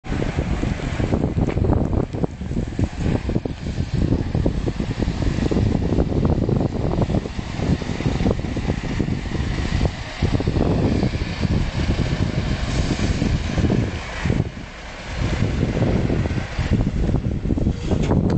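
Škoda 706 RTO bus's diesel engine running as the bus pulls slowly away, heavily buffeted by wind on the microphone.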